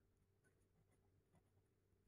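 Near silence: the speech pauses and only a very faint low hum of room tone remains.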